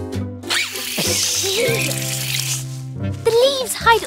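Cartoon background music with steady held notes. About a second in comes a rustling, crunchy noise of dry autumn leaves, lasting over a second, and there are short character vocal sounds.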